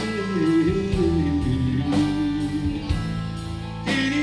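Live three-piece band playing a slow blues-rock number on electric guitar, electric bass and drum kit. A sliding melodic line runs over a steady cymbal beat.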